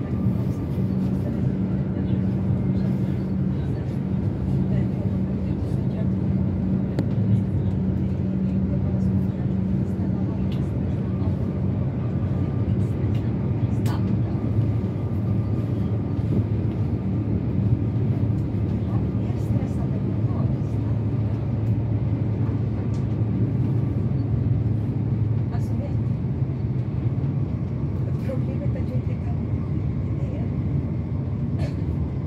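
Cabin noise inside a Stockholm commuter train (Alstom Coradia X60) running at speed: a steady rumble from the wheels on the rails, a low hum from the traction motors, and a few faint clicks.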